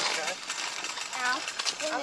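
Voices of people talking in the background over a steady hiss of outdoor noise, with one short spoken phrase about a second in.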